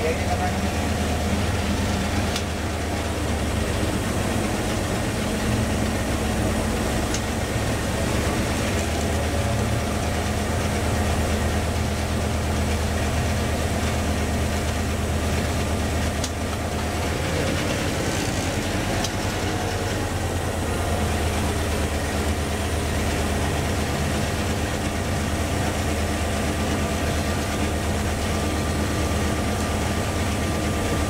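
Steady drone of a Sri Lanka Railways Class M2 (EMD G12) diesel locomotive under way, heard from inside its cab, the engine mixed with running noise.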